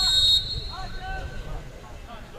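Referee's pea whistle blown once, a short, slightly trilling blast of about half a second right at the start, signalling that the free kick may be taken. Faint shouts from the pitch follow.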